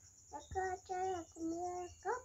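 A small child's voice in a sing-song, holding three drawn-out notes, the last one lower. A steady high insect chirring runs underneath.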